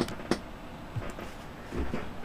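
Quiet handling noise: two sharp clicks near the start and a soft low thump near the end.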